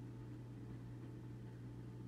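Low steady hum under a faint even hiss, with no other distinct event.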